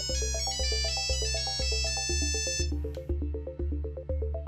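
Nokia 3310 mobile phone playing a monophonic ringtone: a quick run of high beeping notes that stops about three seconds in, over background music with a steady beat.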